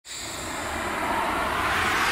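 Logo intro sound effect: a rushing whoosh that starts abruptly and builds steadily louder.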